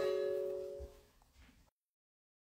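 A single chime, two steady notes sounding together, struck suddenly and fading out over about a second; then the audio cuts out to dead silence.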